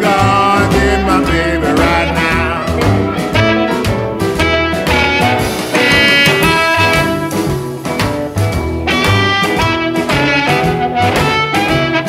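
Electric blues band recording in an instrumental passage without vocals: a lead instrument bends and wavers notes over a steady bass and drum groove.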